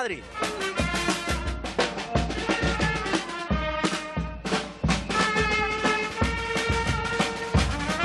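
Brass band music, trumpets and trombones holding notes over a drum beat.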